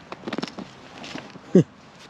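Frozen soil crunching as clods of dug dirt are kicked and broken apart by a boot: a few short crunching clicks near the start. About a second and a half in comes a short laugh.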